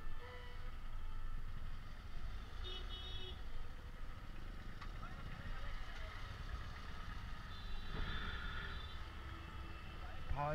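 Steady low rumble of slow, jammed street traffic of motorcycles, scooters and rickshaws, heard from a scooter moving at walking pace. Brief high-pitched tones come about three seconds in and again near the end.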